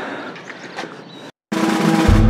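Footsteps and outdoor noise while walking, with a few faint clicks. After a brief dropout at a cut, background music with drums starts about one and a half seconds in and is the loudest sound.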